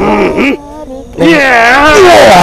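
A person's voice making a loud, buzzing, wavering hum that starts about a second in, after a shorter, quieter vocal sound at the start.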